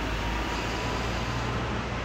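Steady road traffic noise, an even low rumble and hiss, with a red double-decker bus moving along the road close by.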